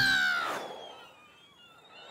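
Cartoon sound effect: a whistle falling in pitch and fading away, for a kicked ball flying off into the distance. A faint rising whistle follows near the end.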